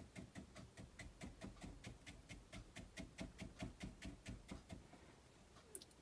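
A soft mop brush tapping acrylic paint onto a canvas panel: a run of quick, faint, even taps, about six a second, stopping shortly before the end.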